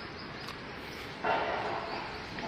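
A single loud animal call, sudden and pitched, about a second in, strongest for about half a second before fading.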